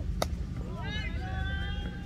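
A single sharp crack of a cricket ball impact a quarter of a second in, as a delivery is played, followed by a high, held shout from a player lasting about a second.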